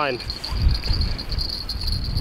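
Small bite-alarm bell on a surf fishing rod tinkling continuously in a high, fast trill as the rod is handled.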